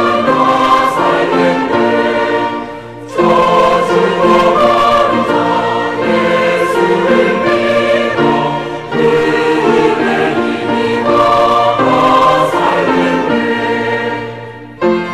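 Mixed church choir of men's and women's voices singing a hymn in Korean, with a brief break between phrases about three seconds in.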